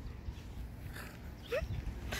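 Low, steady rumble of background noise on the microphone, with a brief rising voice sound about three-quarters of the way through.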